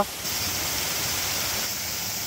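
Steady, even hiss of outdoor forest ambience with no distinct events, a higher hiss joining in just after the start.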